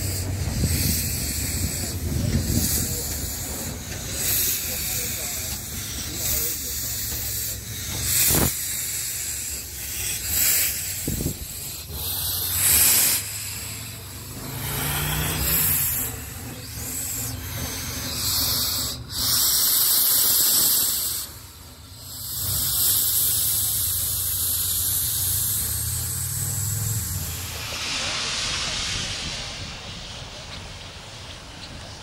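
Vintage 4-4-0 steam locomotive, Virginia & Truckee No. 22 "Inyo", hissing steam in repeated bursts over a low rumble beside its wooden coach. The longest and loudest hiss comes about two-thirds of the way through.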